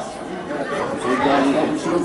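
Chatter of several people talking over one another close to the microphone, spectators' conversation with no words standing out.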